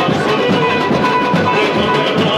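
Samba-enredo played loudly and continuously: a dense ensemble with plucked strings over percussion.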